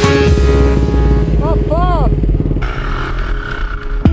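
Dirt bike engine running, with a short rising-and-falling voice-like sound about one and a half seconds in.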